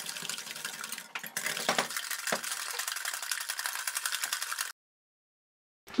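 Stainless-steel balloon whisk beating eggs and sugar by hand in a glass bowl until the sugar dissolves. The wires click rapidly and evenly against the glass. The clicking cuts off suddenly about a second before the end, leaving dead silence.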